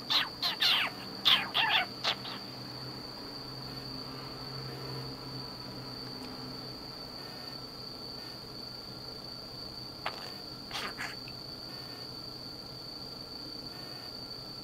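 A budgerigar giving a quick run of short, sharp chirps in the first two seconds, then a few more chirps about ten seconds in. A steady high-pitched tone runs underneath.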